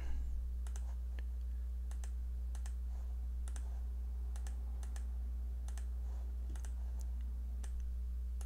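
Computer mouse clicks, a dozen or so at irregular intervals and many in quick pairs, as traces are drawn in circuit layout software, over a steady low electrical hum.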